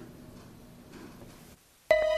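Faint room tone, then background music starts abruptly near the end with sustained pitched notes.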